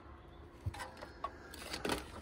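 Quiet handling noises: a few soft knocks and light rustles as a burst aluminium drink can and the plastic bag it was in are handled and set down.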